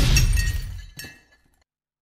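Glass-shattering sound effect: a sudden crash with a deep boom and high ringing that dies away, a smaller second hit about a second in, then silence.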